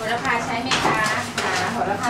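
Kitchen clatter: a knife working on a wooden cutting board and clinks of dishes and cutlery, under people's voices.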